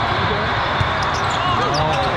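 Indoor volleyball tournament hall din: sneaker squeaks on the sport court and a single sharp ball hit a little under a second in, over a constant wash of voices from many courts.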